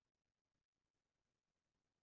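Near silence: digital silence with no audible sound.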